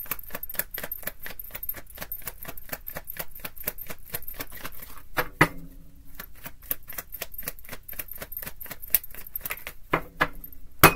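A tarot deck being shuffled by hand: a quick, steady run of light card clicks, with a short lull and one louder tap about halfway through.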